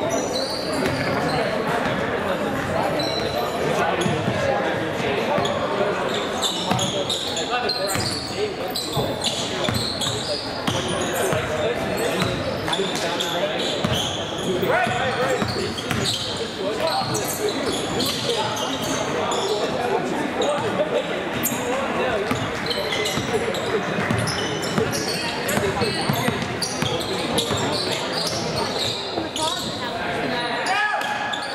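A basketball bouncing on a hardwood gym floor during play, with sharp knocks throughout, over a steady hubbub of voices from players and spectators in a large, echoing gymnasium.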